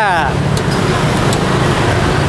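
Bánh xèo batter and bean sprouts sizzling in oil in a hot wok over a live fire, a steady hiss heard as the lid is lifted off, with a couple of faint metallic clicks.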